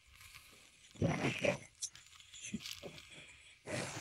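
Quiet handling noises: a short rustle about a second in, a few light clicks, and another rustle near the end. They come from hands working at a plastic-wrapped battery module while a multimeter probe is held on its terminal.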